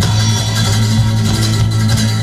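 A live band plays an instrumental passage: a strummed acoustic guitar over an electric bass holding low notes. The bass drops to a lower note just as the passage begins.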